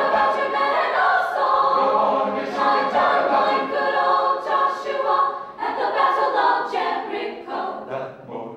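A high-school choir of teenage girls singing held notes together. The singing dips briefly about two-thirds of the way through and stops just before the end.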